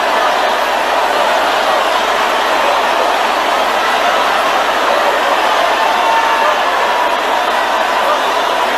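A congregation praying aloud all at once: many overlapping voices blending into a steady, dense babble with no single voice standing out.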